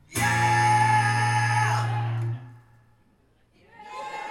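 A loud strummed chord on an amplified acoustic guitar rings for about two seconds, then is muted and stops abruptly.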